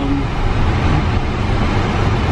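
Steady low rumble of a moving car, tyre and engine noise heard from inside the cabin.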